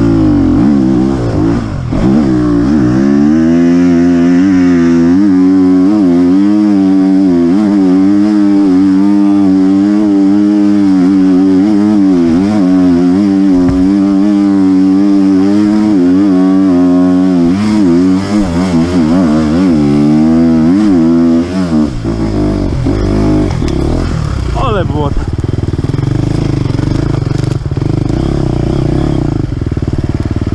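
Enduro dirt bike's engine running under the rider, its pitch wavering up and down with the throttle. About two-thirds of the way in the sound turns to a lower, rougher rumble.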